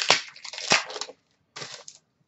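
Trading cards and plastic card holders being handled: rustling and scraping over the first second, two sharp clicks among it, and another short rustle near the end.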